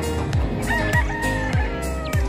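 A gamefowl rooster crows once, starting about two-thirds of a second in and lasting just over a second, over background music with a steady drum beat.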